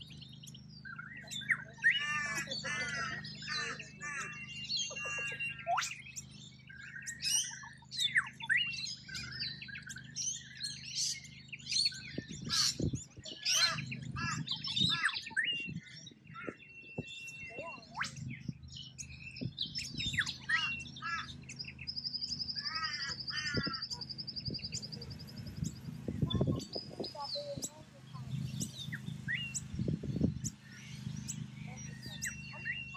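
Noisy miners calling: a busy run of short chirps and harsh squawks, with a high, steady trill about three-quarters of the way through. A low steady hum runs underneath.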